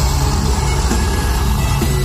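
Live heavy metal band playing loud, with a dense wall of bass and drums filling the low end.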